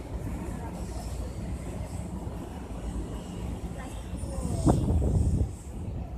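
Outdoor background noise: a steady low rumble like wind on the microphone, with faint voices in the background and a louder burst of voices about two-thirds of the way in.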